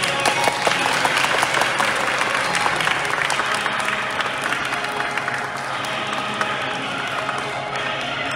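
An audience applauding over background music; the clapping is heaviest in the first few seconds and thins out after about five seconds.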